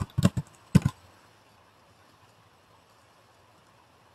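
Computer keyboard keystrokes: a quick run of about five key taps in the first second, then near-silent room tone.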